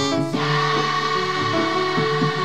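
A children's choir singing a gospel song together, the voices holding long steady notes.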